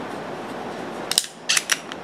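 Ruger LCP .380 pocket pistol's action being worked by hand: one sharp metallic click about a second in, then a quick run of clicks about half a second later.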